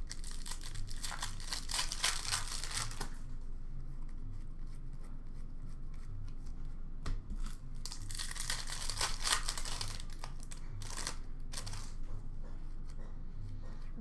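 Hockey card pack wrapper being torn open and crinkled by hand, in two bouts of crackling: one through the first three seconds, another from about the middle to ten seconds in, with a few brief crackles after.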